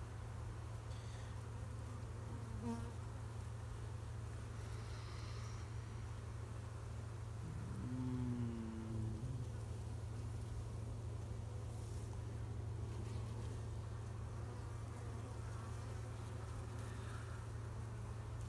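Honeybee colony on an opened hive humming steadily, with a brief louder buzz about eight seconds in.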